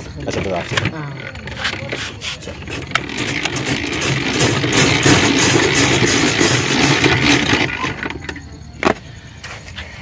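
Hand-cranked cast-iron ice shaver grinding a block of ice into shaved ice: a rough scraping rattle with clicks, densest and loudest from about three seconds in until nearly eight seconds, then easing off.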